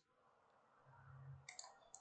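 Near silence, with a faint low hum around the middle and then a few faint computer-mouse clicks in the second half.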